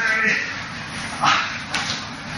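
A man's short, high-pitched vocal sounds at the start, then a breathy burst about two-thirds in and a sharp slap-like click near the end.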